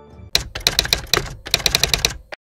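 Typewriter sound effect: quick runs of sharp key-clicks, with a short break about halfway through.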